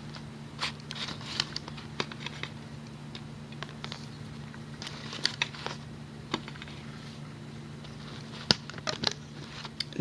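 Small irregular clicks and snaps of rubber loom bands being stretched and slipped over the plastic pegs of a Rainbow Loom, busiest in the first half, over a steady low hum.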